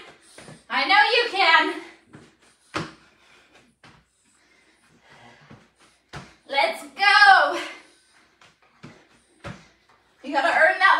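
Sharp thuds about every three seconds as a person doing burpees lands on a floor mat, between two short stretches of a voice without clear words, about a second in and again near the middle.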